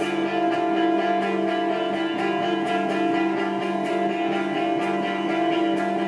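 Amplified electric guitars playing live, holding a steady droning chord with a thick layer of sustained notes and regular picked strokes.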